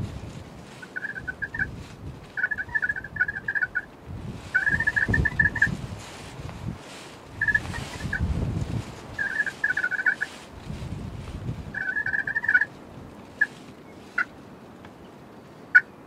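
A Rio Grande wild turkey tom gobbling again and again, each rattling gobble about a second long, with a few short sharp notes near the end.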